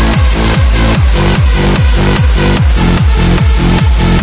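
Hard dance track at full drive: a steady four-on-the-floor kick drum, each hit dropping in pitch, alternating with an offbeat bass note under a dense electronic synth layer.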